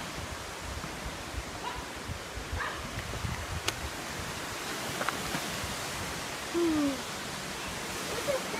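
Steady rushing of a waterfall, with low buffeting on the microphone and a single sharp click about three and a half seconds in.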